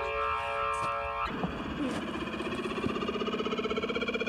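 Background music: a held drone chord that gives way a little over a second in to a rapidly pulsing synthesizer tone rising steadily in pitch.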